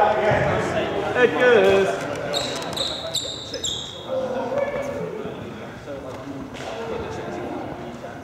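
Indistinct voices echoing in a sports hall, with a few short, high-pitched squeaks between about two and four seconds in, like trainers squeaking on the court floor.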